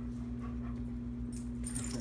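A German Shorthaired Pointer–Labrador mix dog panting softly, with a few brief high jingles in the second half, over a steady low hum.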